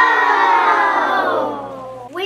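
A group of children shouting one long, drawn-out "Yeah!" together, the pitch sliding slowly down as it fades toward the end.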